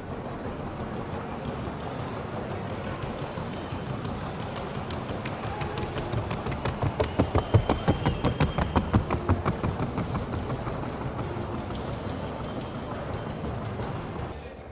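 A trocha Colombiana mare's hooves beating on the wooden boards of the hard track in the fast, even two-beat trocha gait: a quick, regular run of sharp hoofbeats that grows louder through the middle and then fades, over steady arena background noise.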